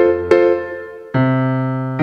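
Digital piano playing a 12-bar blues accompaniment: the right hand strikes an F-major triad in a long-short-short rhythm over a left-hand walking bass. A short chord lands just after the start, and a new chord with a lower bass note comes in about a second in, each fading after it is struck.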